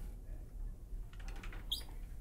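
Low steady hum, then in the second half a few light clicks and, near the end, one short high squeak from a wooden closet door being handled.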